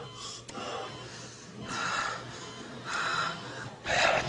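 A bedridden man's laboured, gasping breaths mixed with weak, breathy whispered words, coming in four short bursts about a second apart.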